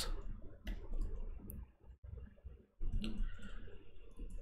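Computer keyboard being typed on: scattered short keystroke clicks, with a brief gap about halfway through and a quicker run of keystrokes after it.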